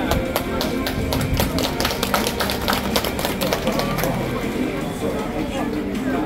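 Procession music with a rapid, uneven run of sharp percussion strikes for about the first four seconds, under people talking.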